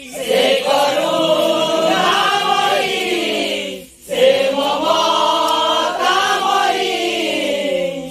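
A chorus of voices chants a devotional sankirtan line in unison. There are two long held phrases, each sliding down in pitch at its end, with a short break about halfway.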